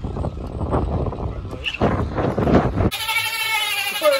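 Wind rushing over the microphone with road noise from an e-bike ridden fast. About three seconds in it cuts to a drawn-out, wavering, bleat-like voice that falls in pitch near the end.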